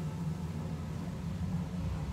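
Laboratory ventilation running: a steady low hum with a soft airy rush, unchanging throughout.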